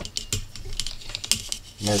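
A string of light clicks and taps as a multimeter and its test probe leads are handled on a silicone work mat.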